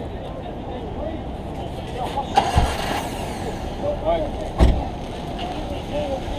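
Street ambience: road traffic running steadily with distant voices, and two short low thumps about two and a half and four and a half seconds in.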